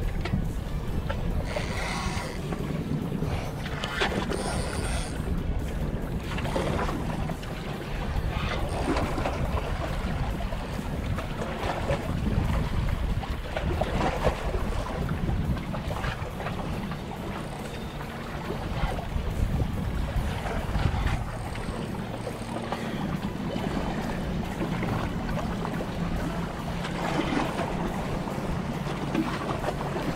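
Wind rushing over the microphone with waves washing against jetty rocks, a steady noise with a few short knocks in the first several seconds. A faint steady low hum joins in the last third.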